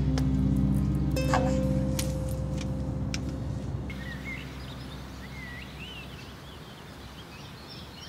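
Soft background score with sustained low notes, fading away over the first half. From about halfway in, small birds chirp over a quiet outdoor background.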